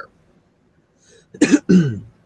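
A man gives a short two-part cough to clear his throat about one and a half seconds in, after a brief pause.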